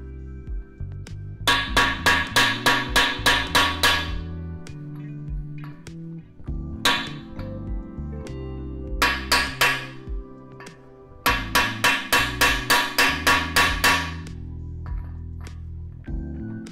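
A hammer striking a metal bar held over a brass freeze plug, driving the plug into a Toyota 2JZ cast-iron engine block: quick runs of sharp metal-on-metal blows, about four a second, separated by short pauses. Background music plays underneath.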